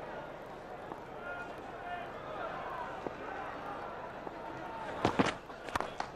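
Low crowd murmur around a cricket ground, then about five seconds in a couple of sharp cracks as the batsman strikes the ball.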